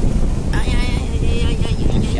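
Vehicle driving over a rough dirt road: a steady loud rumble with wind buffeting the microphone. A high, wavering pitched sound comes in about half a second in and lasts just over a second.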